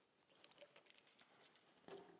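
Near silence: hall room tone with a few faint, short clicks about half a second to a second and a half in.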